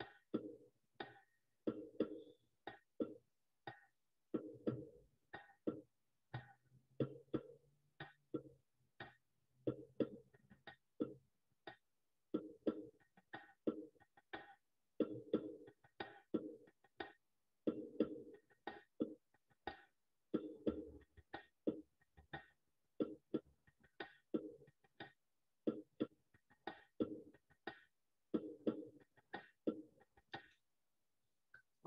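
Recorded hand drum and bongos playing the baladi rhythm together in 4/4: the drum keeps the basic baladi pattern while the bongos layer quicker sixteenth-note accents over it, as a layered drum-circle version of the rhythm.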